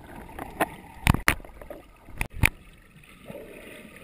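Muffled underwater water movement picked up by a camera in a waterproof housing, with five sharp clicks at uneven spacing in the first two and a half seconds, then only the steady wash.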